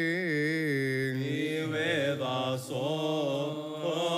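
A man's voice singing Coptic liturgical chant: one long, ornamented line whose pitch wavers and sinks lower, with a short break about two and a half seconds in before the chant carries on.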